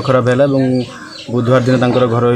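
A man talking, pausing briefly about a second in, with birds calling in the background.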